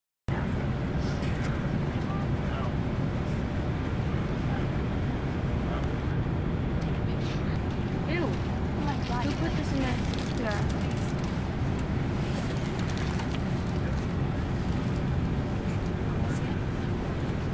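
Steady low rumble of an airliner cabin, the engine and air noise heard from a passenger seat, starting abruptly a moment in, with faint voices of passengers talking over it.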